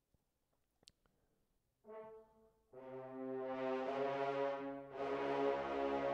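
Sampled French horn ensemble from the Trailer Brass library: after a faint click, a short horn chord sounds about two seconds in, then a held chord enters about a second later and grows louder.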